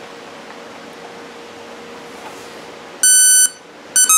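A single loud electronic beep, about half a second long, about three seconds in: the signal tone of an RC brushless-motor speed controller (ESC), played through a small speaker wired in place of the motor. Before it there is only a faint steady hiss with a low hum.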